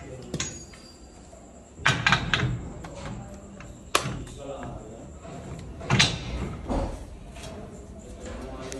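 A few separate metallic knocks and clanks as a socket and long torque wrench are fitted onto a large bolt in a steel plate, the sharpest about four seconds in. There is no rhythmic hammering from an impact wrench.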